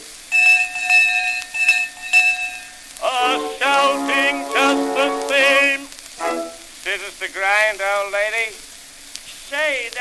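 1904 acoustic disc recording of a comic song: a bell-like ringing tone struck several times, then short sung or vocal phrases, all over the surface crackle of the old record.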